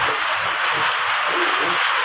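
Heavy rain falling on a corrugated roof, a steady hiss.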